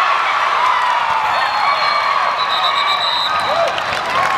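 Sideline players and spectators cheering and yelling at a football catch, many voices shouting over each other. A high, steady whistle sounds in the middle, broken up for about a second.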